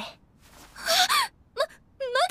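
A young woman's breathy, flustered gasp in an anime voice performance, rising in pitch, followed by a very short vocal sound.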